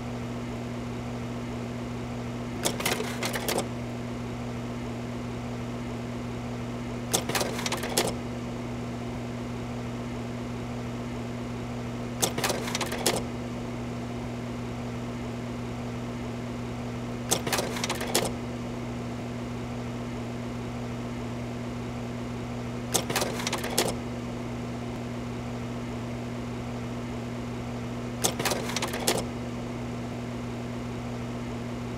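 A steady low hum with a short burst of rapid mechanical clattering about every five seconds, six bursts in all, each about a second long.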